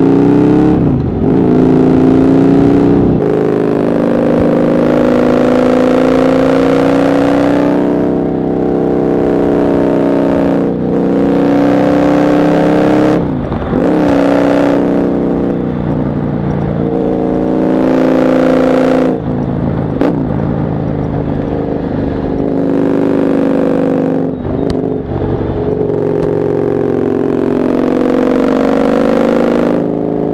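Husqvarna Nuda 900's parallel-twin engine under way, pulling up through the revs and easing off again and again, its pitch climbing with each pull and dropping at each gear change or roll-off.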